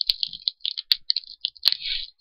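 Plastic jelly packaging being handled and opened, crackling irregularly with three sharp clicks.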